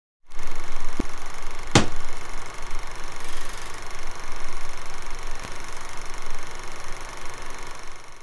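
Logo-sting sound effect: a sustained rushing sound with a faint hit about a second in and a sharp impact just under two seconds in, slowly fading toward the end.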